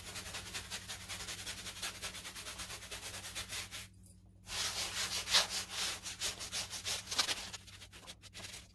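Paintbrush scrubbing paint onto a stretched canvas in quick short strokes. The scrubbing stops for about half a second near the middle, then resumes louder before tailing off near the end.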